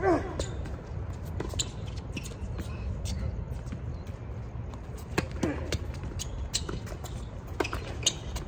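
Tennis ball struck by rackets in a doubles rally: a sharp pop of the serve at the start with a short "ah" grunt, then more racket hits about five seconds in and near the end. A steady low rumble runs underneath.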